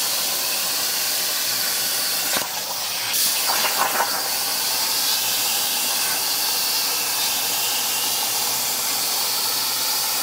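Plasma torch of a Tormach 1300PL CNC plasma table cutting metal plate: a loud, steady hiss of the cutting arc and air jet. It breaks briefly about two and a half seconds in, then turns rougher and crackly for about a second before settling back to the steady hiss.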